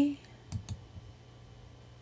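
A computer mouse button clicked once about half a second in, heard as two quick ticks of press and release, the click that steps the page on to the next character.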